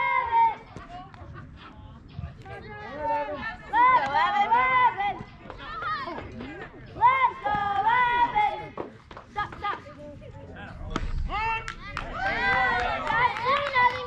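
Raised, high-pitched voices of spectators and players shouting and calling out at a youth baseball game, in several spells. About eleven seconds in comes a single sharp crack of bat on ball, followed by the loudest burst of shouting as the batter runs.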